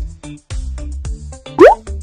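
Electronic background music with a bass beat. About one and a half seconds in, a short, loud rising 'bloop' sound effect sweeps quickly upward in pitch over the music.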